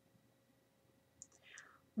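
Near silence: room tone. Then, in the second half, a few faint mouth clicks and a soft intake of breath just before speech resumes.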